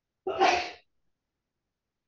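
One short, breathy burst of a person's voice, about half a second long, a quick laugh or sneeze.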